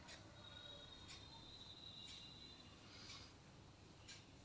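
Near silence, with four faint, short, high chirps about a second apart over low background hiss.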